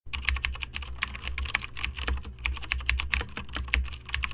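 Keyboard typing sound effect: a quick, uneven run of key clicks, several a second, over a low steady hum.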